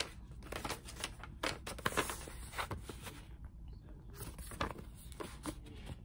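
Paper rustling and crinkling as a printed order invoice is handled and held up, with irregular sharp crackles and a brief lull a little past the middle.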